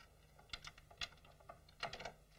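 A few faint, irregular clicks and taps as a key works the lock of a wooden cabinet and its door is opened.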